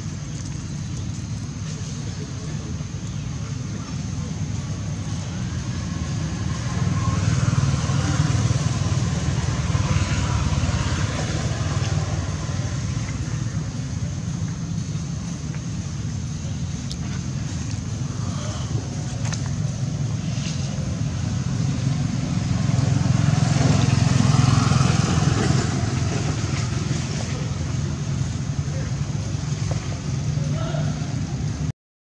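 Steady low rumble of motor traffic, swelling twice as vehicles pass, with faint voices in the background.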